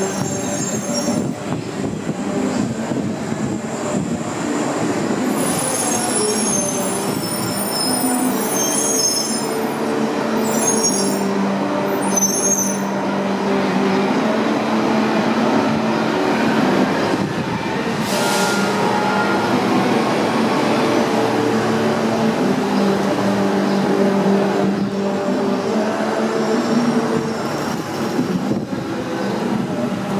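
Street traffic and city buses running and pulling away under an elevated rail line, with the rumble of a passing train. A series of high-pitched metal squeals comes between about 5 and 13 seconds in, and a short hiss about 18 seconds in.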